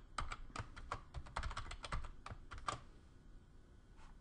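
Typing on a computer keyboard: a quick, irregular run of keystrokes that stops a little before the end.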